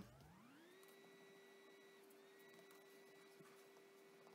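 Near silence, with only a faint steady tone that glides up in pitch over the first second and then holds level.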